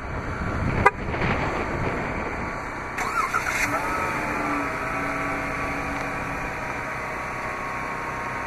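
A 2015 Dodge Charger's 3.6-litre Pentastar V6 starting by remote start: a sharp click about a second in, then the engine starts, rises briefly in pitch around three seconds in, and settles into a steady idle.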